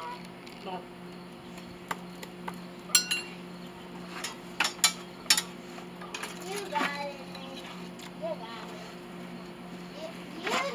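Sharp metal clinks and taps of tongs and a crucible knocking against a metal casting mold, scattered through the middle, one of them ringing briefly, over a steady low hum.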